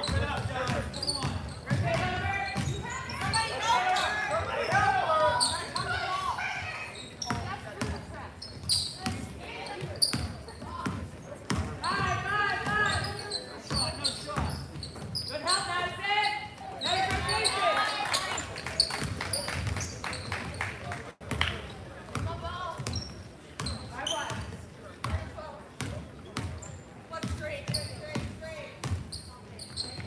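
A basketball bouncing on a gym's hardwood floor during play, amid shouted voices from players, coaches and spectators, echoing in a large gymnasium.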